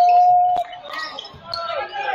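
Basketball game on a hardwood court: a loud, steady one-pitch sound at the start lasts just under a second and ends with a sharp thud of the ball bouncing, followed by shouting voices of players and spectators.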